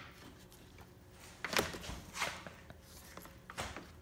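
A few light clicks and knocks of hand-handled metal parts and tools in an open engine bay, spread across the few seconds, over a faint steady low hum.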